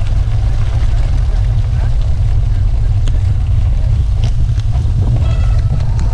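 Heavy wind buffeting on the microphone of a bike-mounted camera while riding, a steady low rumble, mixed with the rattle of bicycle tyres on a wet gravel road.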